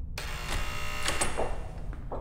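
A steady electric buzzing hum starts just after the opening and stops shortly before the end, with footsteps going on beneath it.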